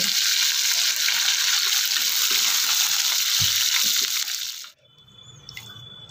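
Hot oil sizzling steadily in a kadhai around freshly added curry leaves, ginger-garlic paste, cumin and mustard seeds, a tadka being fried, with a few faint pops. The sizzle cuts off suddenly about five seconds in.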